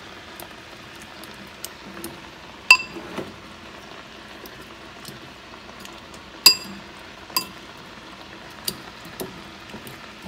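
Metal fork clinking and tapping against a ceramic bowl while breaking up soft boiled potatoes. Two sharp, ringing clinks come about a quarter of the way in and again past halfway, with lighter taps in between, over a low steady hiss.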